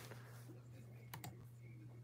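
A few faint keystroke clicks of typing on a computer keyboard, over a steady low hum.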